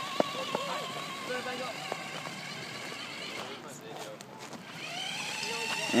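Small electric RC car's brushed motor and drivetrain whining steadily as it drives across asphalt, with a couple of light clicks in the first second. The whine rises and gets louder near the end as the car speeds off.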